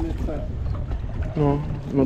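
Wind buffeting an action camera's microphone over open water, a steady low rumble, with a brief voice about one and a half seconds in.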